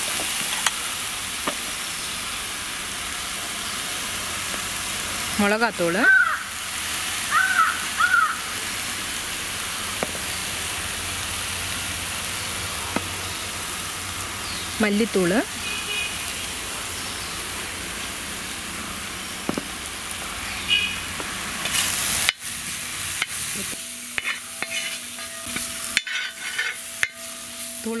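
Masala paste with curry leaves sizzling steadily in oil in a wide aluminium pan. About three-quarters of the way through the sizzle drops, and a perforated metal ladle scrapes and clicks against the pan as the paste is stirred.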